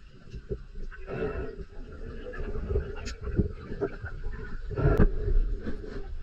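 Underwater noise picked up by a camera in its waterproof housing: a low rumble of moving water with irregular clicks and short bursts, and a heavy thump about five seconds in.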